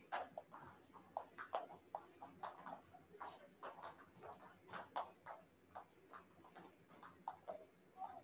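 Several jump ropes skipping on foam mats: the ropes slapping the floor and feet landing make a faint, uneven patter of sharp clicks, several a second.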